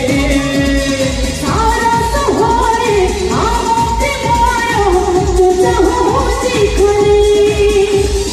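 A male voice singing an Odia Jatra song into a microphone, with long held notes, over a backing track with a steady beat.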